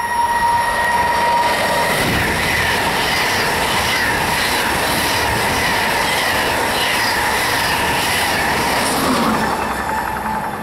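A DB class 101 electric locomotive and its rake of Intercity coaches running through a station at speed: a steady high tone as it approaches, then a loud, even rush of steel wheels on rail with rhythmic wheel clatter and a wavering high wheel squeal, easing off near the end as the last coach goes by.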